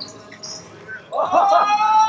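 A drawn-out shout from one person's voice. It starts about a second in, swoops up, holds a steady pitch for about a second, then falls away.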